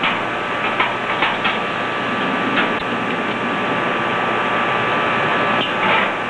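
Small gas burner hissing steadily under the work, with a few sharp metal clicks as vice grips hold and shift the hot aluminum part over the flame.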